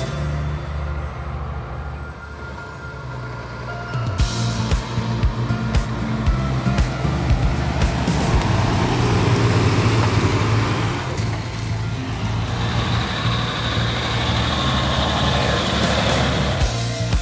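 Loaded log truck with trailer driving past. The engine and tyre noise builds from about four seconds in, is loudest just past the middle, then eases off.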